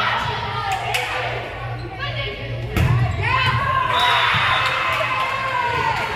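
Volleyball being struck and thudding during a rally in a gymnasium, with a loud thump about three seconds in. Right after it, players and spectators break into shouting and cheering, one high voice held for a couple of seconds.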